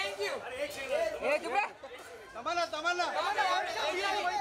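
Several people talking and calling out over one another, with a brief lull a little before two seconds in.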